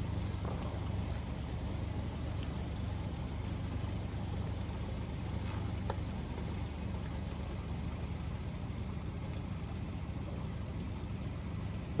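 Diesel engine running steadily: a constant low drone that does not change in speed.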